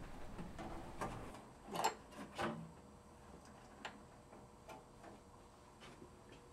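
Quiet handling sounds: a few light taps and clicks in the first half as the kiln's steel bottom pan is swung aside and its wires are moved, then a couple of fainter ticks.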